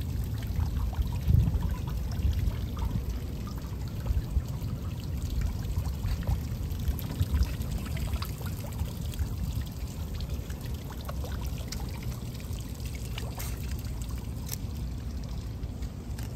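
Small fountain jet in a lily-pad pond, its spray falling back onto the water in a steady splashing trickle, over a low rumble.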